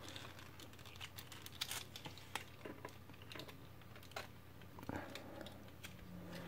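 Faint, scattered clicks and taps of the hard plastic parts of an Omnigonix Spinout transforming robot figure being handled and pushed together into a tight fit.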